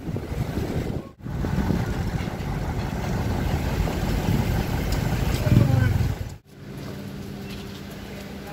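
Road traffic and engine noise heard from an open moving vehicle, louder while a container truck runs close alongside. The sound cuts off abruptly twice, the second time giving way to a quieter steady hum.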